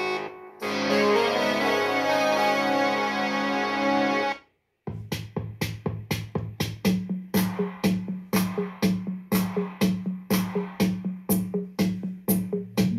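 Music playing through the XGIMI Mogo 2 Pro projector's built-in speaker. A synth-and-keyboard song cuts off about four seconds in. After a brief gap a new track starts with a drum-machine beat of about three hits a second, joined a couple of seconds later by a steady bass note.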